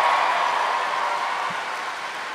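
Live audience applauding, the clapping dying down gradually.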